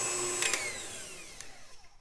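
Electric stand mixer whisking cream cheese, butter and powdered sugar. About half a second in there is a click, and the motor whirs down in pitch as it slows to a stop.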